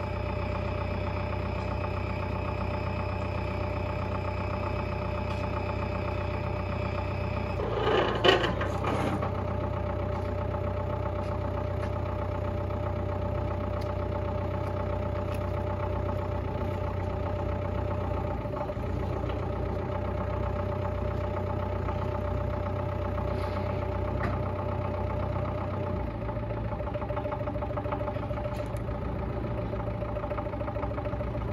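Datsun forklift's engine idling steadily, with a brief louder clatter about eight seconds in.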